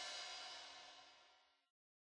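The final chord of a song's backing music ringing out and fading, dying away to silence a little over a second in.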